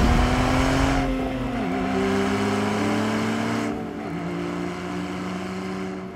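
Porsche 911 Carrera T's flat-six engine running steadily, its note stepping down in pitch twice, about a second and a half in and again about four seconds in.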